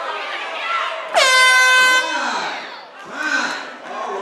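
An air horn sounds once for a little under a second, about a second in, signalling the end of the round. Crowd shouting and voices carry on around it.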